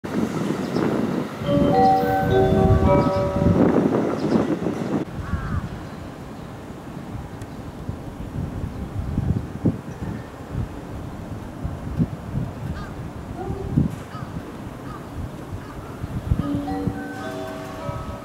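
A short electronic chime melody of several stepped notes at a railway station, heard twice: over a loud rumble in the first few seconds, and again near the end as a train approaches. Between the two, the station background is quieter, with a few sharp clicks.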